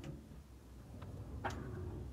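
Sliding wardrobe door pushed along its track: faint clicks as it moves, then a sharper knock about one and a half seconds in.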